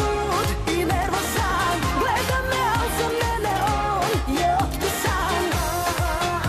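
Serbian pop-folk song: a woman sings a winding melody over a steady dance beat with a regular kick drum.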